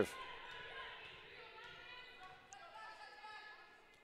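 A volleyball bounced a few times on a hardwood gym floor as the server gets ready to serve, faint, under faint distant voices.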